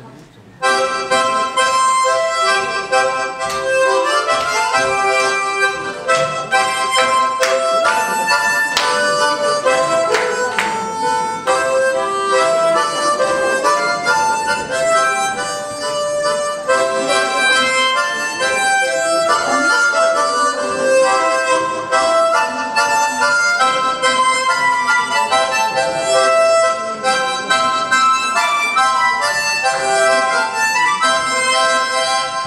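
Harmonica played solo, a 1950s waltz melody with chords, starting about half a second in.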